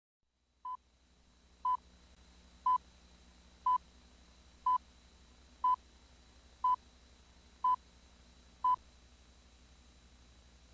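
Slate countdown beeps on a broadcast commercial tape: nine short beeps of the same steady tone, one a second, counting down to the start of the spot, over a faint low tape hum.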